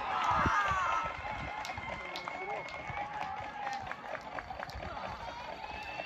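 Several players' voices shouting and calling across a soccer pitch at once, loudest in the first second or so, with a few short sharp knocks among them.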